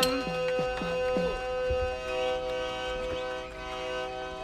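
Harmonium holding a steady chord while a hand drum plays a few strokes whose pitch falls, in the first second or so. This is the instrumental accompaniment between sung verses of a Tamil folk-drama piece.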